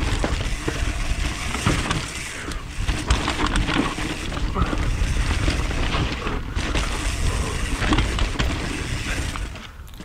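Mountain bike descending a loose trail at race speed, heard from a helmet- or chin-mounted action camera: tyres on dirt, with the chain and frame rattling and knocking over bumps, under a steady low rush of wind on the microphone.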